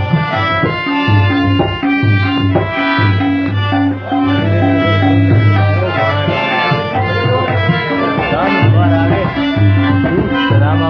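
Harmonium playing a melody over tabla accompaniment, with the low bass drum and the higher drum keeping a steady, repeating rhythm.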